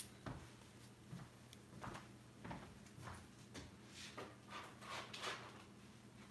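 Faint, scattered small clicks and rustles, one or two a second, over a low steady hum.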